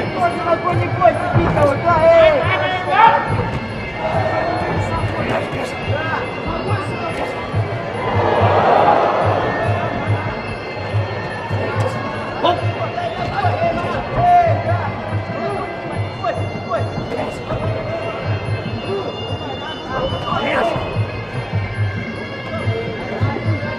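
Arena sound during a Muay Thai bout: music with a steady drum beat and a wavering melody, mixed with voices. A swell of crowd noise comes about eight seconds in.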